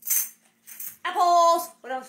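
A woman's voice holding one brief, steady note without words, after two short rustles.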